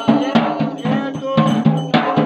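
A double-headed barrel drum beaten in a fast ritual rhythm, about five or six strokes a second, with a steady metallic ringing over it.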